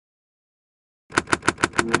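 Logo intro sound effect: silence, then about a second in a rapid run of sharp clicks, about six a second, joined near the end by a held chord.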